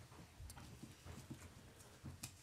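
Near silence: faint room tone with scattered soft knocks and clicks from people moving about.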